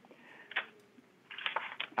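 Brief, quiet rustling of paper card stock being handled and lifted away from a craft tool board, with a short tap about half a second in.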